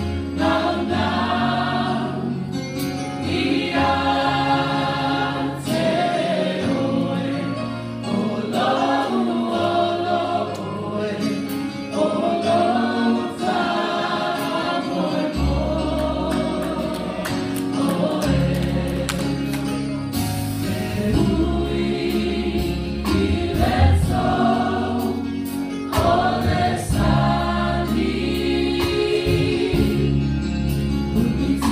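A church choir of women and children sings a gospel song in unison, with electric keyboard accompaniment. A deeper bass line joins about halfway through.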